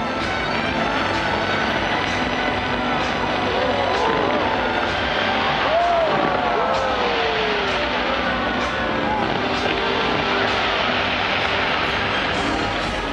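Fireworks display going off in a continuous barrage: a dense wash of bangs and crackle, with sharper reports about once a second. A crowd shouts and whoops over it, most of all around the middle, where it is loudest.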